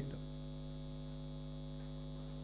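Steady electrical mains hum: a low, even buzz of several constant tones, with nothing else over it.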